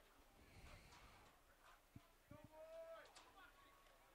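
Near silence of an open football field, with a faint distant shout from the field a little after halfway and a couple of faint knocks just before it.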